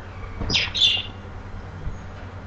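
Two short, high-pitched chirps, like a small bird calling, about half a second apart, over a steady low hum.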